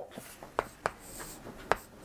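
Chalk writing a Chinese character on a chalkboard: light scratching with sharp taps as each stroke begins, three of them louder than the rest.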